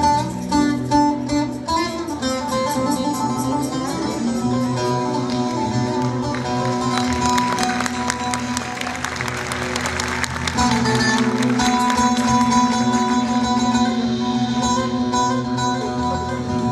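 Long-necked Turkish bağlama (saz) played with a plectrum in an instrumental folk passage: picked melody notes over ringing lower strings. About six seconds in comes a run of rapid strokes lasting several seconds.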